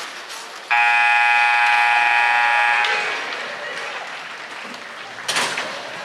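Ice rink scoreboard buzzer sounding once, a steady harsh tone of about two seconds that starts abruptly, over faint arena voices. It is the buzzer that ends play, after which the team gathers around its goalie. A short, loud burst of noise follows near the end.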